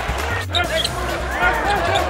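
Basketball arena sound: music playing over crowd voices, with a brief dropout about half a second in.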